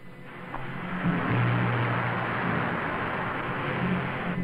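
Sound effect of a spaceship's rocket engine: a steady rushing hiss with a low hum beneath, swelling about a second in.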